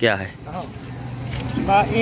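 A steady, high-pitched drone of insects, with a man's voice starting up near the end.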